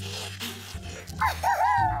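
Background music with a steady low bass, and from just past the middle a loud, high howl-like vocal call that rises and falls in pitch.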